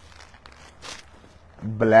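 A brief soft rustle of a clear plastic suit bag being lifted and handled, followed near the end by a man saying a single word.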